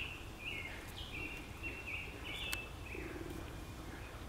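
A run of short, high, clear whistled animal calls, about two a second, each holding its pitch and then stepping down. There is a single sharp click about two and a half seconds in.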